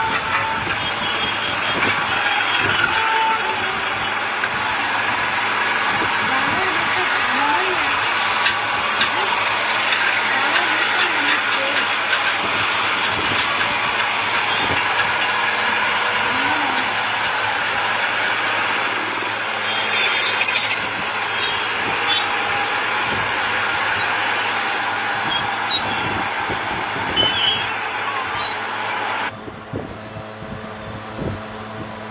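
Steady roadside din of heavy trucks with engines running, mixed with people talking, and a couple of short beeps in the first few seconds. The sound cuts off abruptly shortly before the end.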